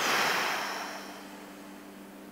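A long, deep breath exhaled through the mouth close to the microphone, a loud rush of air that fades away over about a second, as part of a slow deep-breathing exercise.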